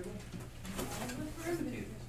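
A soft, off-microphone voice, a student answering the teacher's question, from about two-thirds of a second in until just before the end, over a steady low room hum.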